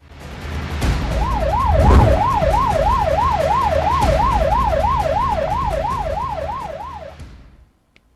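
A siren yelping fast, its pitch sweeping up and down about three times a second, over a low rumbling wash of noise. The siren comes in about a second in, and the whole sound fades out near the end.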